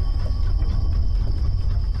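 A loud, deep, steady rumble with a faint high tone held above it.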